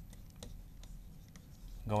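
Stylus writing on the glass screen of an interactive display: a few faint, scattered ticks and taps as a word is handwritten.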